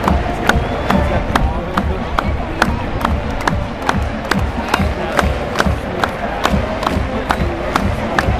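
A marching band's drums strike a steady beat, about three sharp hits a second, under the noise of a large stadium crowd cheering.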